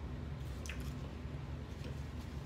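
A person chewing a mouthful of food close to the microphone, with soft wet mouth clicks over a steady low hum.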